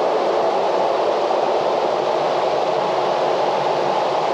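Electric floor fan running, a steady even whoosh with no change in level.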